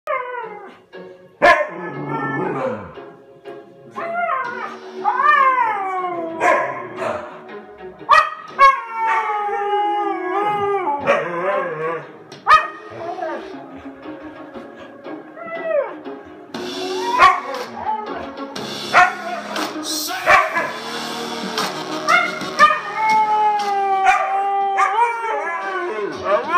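Huskies howling, long calls that rise and fall in pitch, over a song playing through small desktop speakers.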